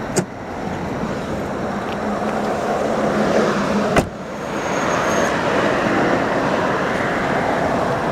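2006 Lincoln Zephyr's 3.0-litre Duratec V6 idling steadily. A click comes just after the start, and a sharp thump about halfway through, the loudest sound, as the car door is shut.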